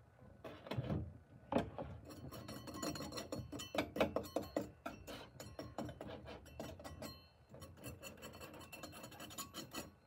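Knife blade scraping and digging through packed casting sand in a steel tray, a quick run of gritty scrapes and small clicks with two heavier strokes in the first two seconds, as a freshly poured silver casting is pushed out of its sand mould.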